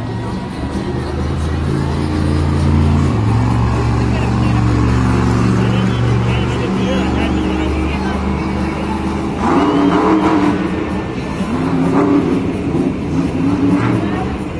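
Stone Crusher monster truck's supercharged engine running hard, its pitch stepping up and down as the throttle is worked, under stadium PA music. A loud voice comes over the top for the last few seconds.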